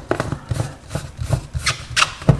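Plastic blade base being screwed onto a personal blender cup by hand: a run of irregular clicks, knocks and rubbing as the threads turn.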